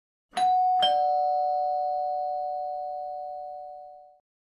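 Two-note 'ding-dong' doorbell-style chime: two struck notes about half a second apart, the second lower, both ringing on together and fading away over about three seconds.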